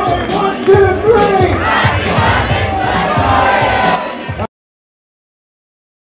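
Loud party dance music with a steady beat, with a crowd shouting and singing along. It cuts off abruptly to silence about four and a half seconds in.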